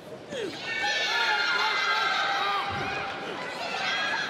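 Arena crowd shouting and cheering as the lifter pulls the barbell into the clean, many voices overlapping and rising about a third of a second in. A dull low thump comes a little before three seconds.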